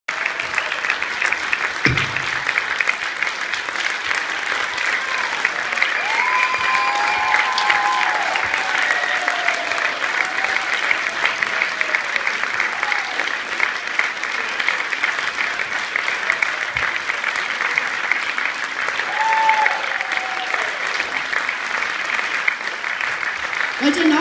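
Audience applauding steadily, with a few voices heard over the clapping now and then.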